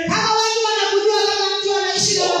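A high woman's voice singing one long held note into a microphone, with faint low beats underneath.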